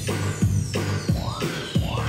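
Electronic dance-style backing track playing loudly: a heavy, steady beat about three times a second under a long falling synth sweep and short rising swoops.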